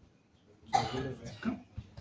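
A person coughing: one sharp cough about two-thirds of a second in, followed by two smaller coughs.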